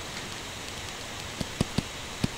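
Faint steady hiss with three or four light ticks in the second half, from a stylus tapping on a tablet screen while handwriting.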